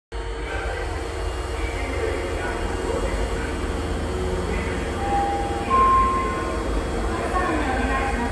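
Osaka Metro 23 series subway train standing at an underground station platform, with a steady low hum. Faint public-address speech echoes in the background. About five seconds in come two short steady electronic tones, the second higher and louder.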